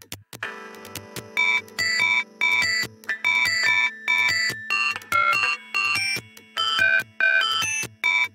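Electronic industrial-metal instrumental: after a brief silence, a low synth drone comes in, then a rhythmic sequence of short, bright synthesizer notes, several a second, forming a beeping melodic pattern.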